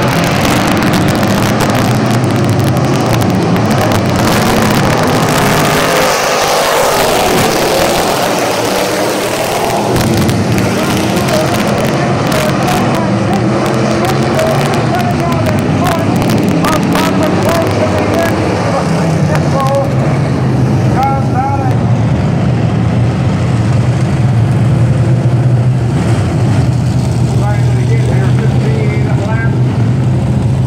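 Dirt-track street stock race cars' V8 engines running steadily at low speed as the pack circles slowly, a continuous low drone that grows louder in the second half, with grandstand crowd voices over it.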